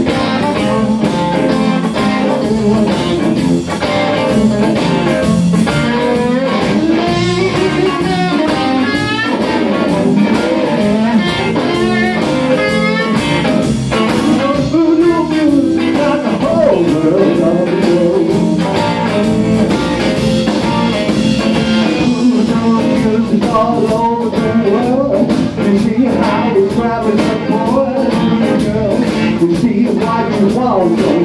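A live blues band playing at full volume: electric guitars, bass guitar and drums, with a man singing over the band.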